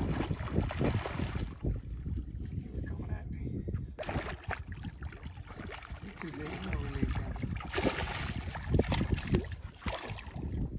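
Wind buffeting the phone's microphone, a heavy low rumble throughout, with water splashing in short hissy surges as a hooked redfish thrashes at the surface beside the boat.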